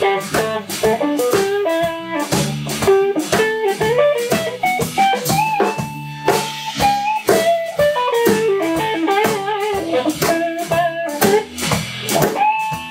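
Live electric blues trio playing: an electric guitar plays lead lines with bent notes over bass guitar and a drum kit keeping a steady beat.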